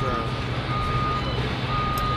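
A vehicle's reversing alarm beeping: a single high steady tone, about half a second on and half a second off, over a steady low rumble.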